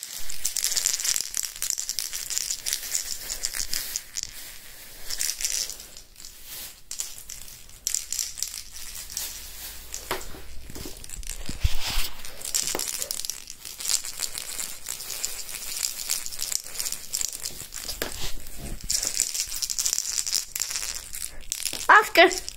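Ferret rummaging and playing: intermittent crinkling and rustling with light clicks and knocks. It is loudest near the start and near the end, where a ferret burrows into a plastic bag.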